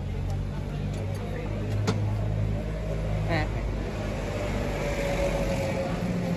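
Steady low engine hum with voices in the background, and a single sharp metallic clink about two seconds in.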